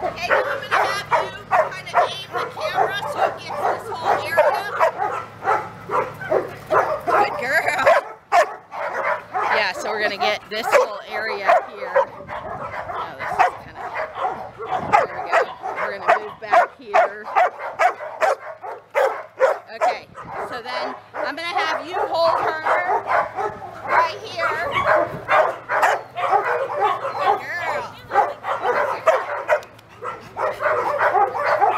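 Dogs barking over and over with hardly a break, calls following one another several times a second.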